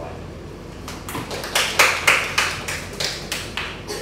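A small audience clapping, about four claps a second, starting about a second in and loudest shortly after.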